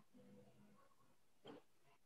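Near silence: faint room tone over an open call microphone, with one brief faint sound about one and a half seconds in.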